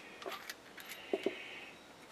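A few faint small metallic clicks and clinks as the parts of a hand tap holder are unscrewed and handled to get at its collet.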